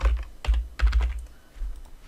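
Typing on a computer keyboard: a quick, uneven run of keystrokes that thins out toward the end.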